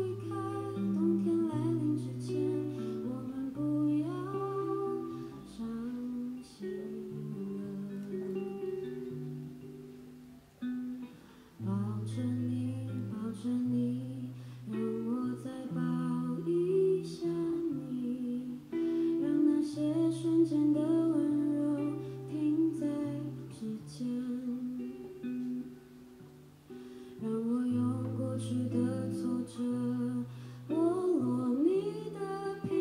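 A woman singing a slow ballad with a soft guitar accompaniment.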